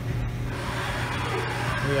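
Haas MDC 500 CNC mill-drill center running its test program behind its closed enclosure door: a steady machine hum.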